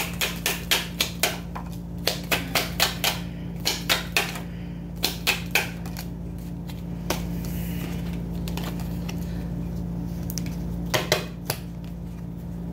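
Tarot cards being shuffled and snapped in the hands, a quick irregular run of crisp clicks for about six seconds, then a pause and a few more clicks near the end as cards are drawn and laid down.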